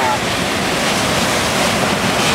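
Breaking ocean surf, a steady rush of whitewater, with wind on the microphone.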